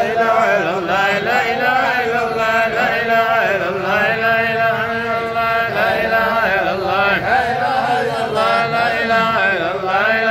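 A man's voice chanting an unaccompanied Sufi qasida (Hamallist zikr) in a continuous, ornamented, wavering melody, over a steady low held drone.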